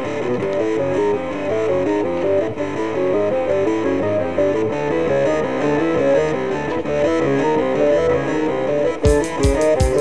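Progressive rock instrumental passage with no vocals: a fast, repeating run of stepping notes over a steady backing. About nine seconds in, drums enter with cymbal strokes and low drum hits.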